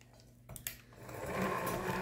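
Electric hand mixer starting up in a glass bowl of batter: a couple of short clicks, then the motor and beaters running steadily from about a second in, mixing melted chocolate into the whisked egg and sugar.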